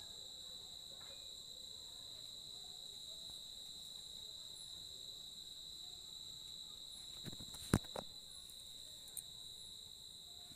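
Steady, unbroken high-pitched trilling of night insects. A few sharp clicks fall about seven to eight seconds in, the loudest near eight seconds, with one more a second later.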